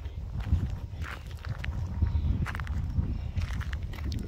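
Footsteps crunching along a gravel road, irregular steps over a low rumble on the microphone.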